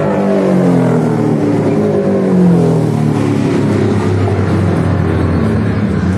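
Race car engine going by on the circuit, its note falling over the first few seconds as it passes, then carrying on as a steadier engine drone.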